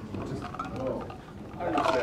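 Faint, indistinct voices in a classroom, with a louder, drawn-out spoken sound near the end.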